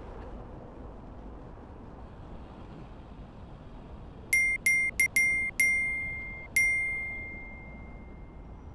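A run of about six bright, identical dings on the same pitch, coming quickly one after another from about halfway through, the last one ringing on longest, over a low steady rumble of traffic and wind.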